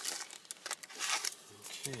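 Trading cards and their pack wrapper rustling and crinkling as they are handled, in two short bursts in the first second or so.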